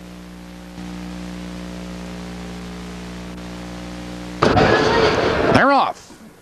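Steady electrical mains hum with a buzzing stack of overtones, stepping up slightly about a second in. About four and a half seconds in, a loud rush of noise lasts about a second, and then a voice starts right at the end.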